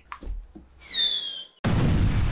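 Cartoon falling-bomb whistle sound effect, a high tone sliding down, followed about a second and a half in by a sudden loud explosion sound effect that rumbles on as it dies away.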